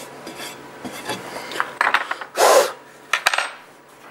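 Small metal wrench clinking and scraping against the metal fittings of a 3D printer's hot end, with a louder scrape a little past halfway.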